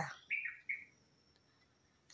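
A small bird chirping twice in quick succession, short falling chirps.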